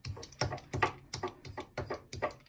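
Light, irregular clicks and taps, about three or four a second, from hands working a fabric appliqué piece and a small pressing tool on a tabletop.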